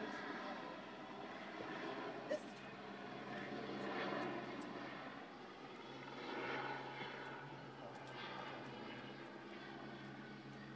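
Helicopter hovering overhead, a steady drone of engine and rotor that swells a little around four seconds in and again past six seconds. A short sharp click a couple of seconds in.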